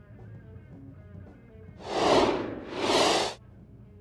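Faint guitar music, then two loud rushing noise bursts back to back, each under a second, a whoosh sound effect for someone passing through a wall.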